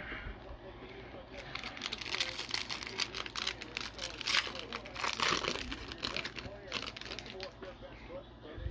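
Foil wrapper of a baseball card pack being torn open and crinkled by hand: a run of crackles and rustles, busiest in the middle.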